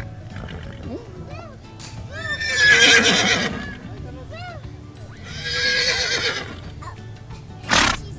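A horse whinnying twice, edited in as a sound effect over background music. A short sharp noise comes near the end.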